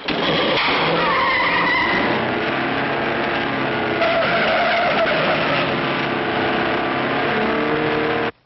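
A car pulling away and driven fast and recklessly, with tires squealing and the engine running hard. The sound is loud and continuous throughout.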